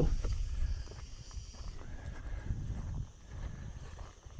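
Footsteps on a dry dirt path, walking at an uneven pace.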